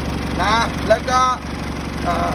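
Isuzu D-Max 2.5-litre four-cylinder turbodiesel idling steadily, its engine bay open, with a man speaking over it.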